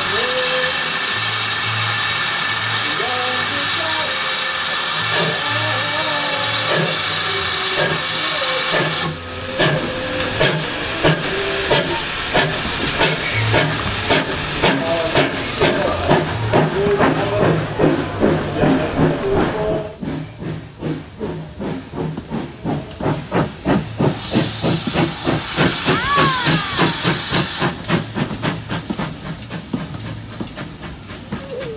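Pannier tank steam locomotive with a steady hiss of steam while standing. About nine seconds in it pulls away with regular exhaust beats that quicken as it gathers speed, with a loud burst of steam hiss near the end.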